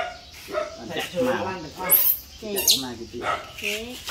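A dog barking and whining in a string of short calls, with a couple of sharp, high squeals about halfway through.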